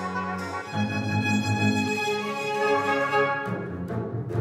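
Baroque orchestra playing a slow concerto passage: bowed strings hold long notes, with deeper string notes coming in just under a second in.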